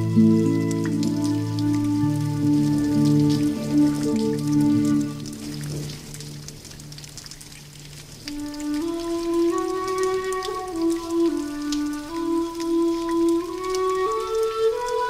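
Slow, gentle instrumental music of long held notes. It thins and quietens about six seconds in, the deep bass drops away, and a higher melody carries on to the end.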